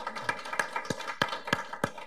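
Applause: several people clapping, with one nearer pair of hands giving louder claps about three a second.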